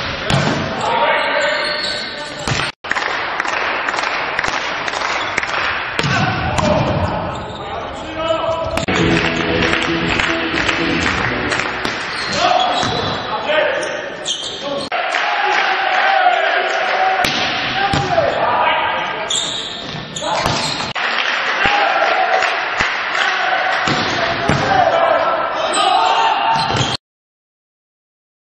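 Indoor volleyball rallies in a large hall: the ball is struck and hits players' arms and the floor, with each impact echoing. Voices carry through the hall, and the sound changes abruptly a few times where short clips are cut together.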